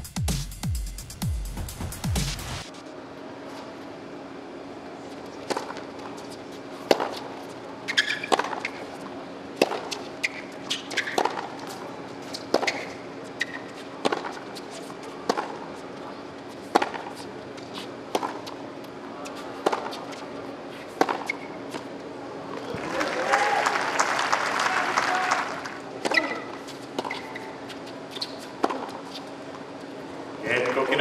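A short music sting, then tennis balls struck by rackets in rallies: sharp hits about a second apart over a steady low hum. A burst of applause comes about 23 seconds in.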